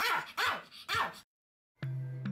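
Pomeranian barking three times in quick succession. After a short silent gap, music with sustained tones starts near the end.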